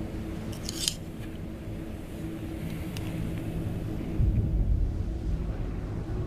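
A business card being drawn from a metal card case: a sharp metallic snap just before a second in and a lighter click near three seconds. A low steady hum runs underneath, and a deep low rumble swells about four seconds in.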